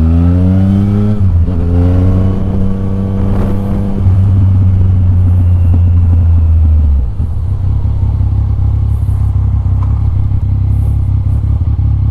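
Yamaha Tracer 900 GT's three-cylinder engine, with its Akrapovic exhaust, accelerating through the gears: the pitch climbs, breaks for an upshift about a second in and climbs again, then holds a strong steady note. Around seven seconds the throttle closes and the sound drops to a lower, rougher steady running.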